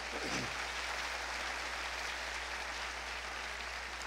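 Congregation applauding: an even, fairly soft patter of many hands, holding steady throughout.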